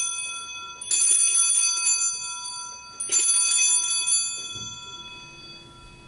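Altar bells rung at the elevation of the chalice after the consecration. The first peal is already fading, then two more sharp ringings come about one second and three seconds in, each leaving several clear bell tones that slowly die away.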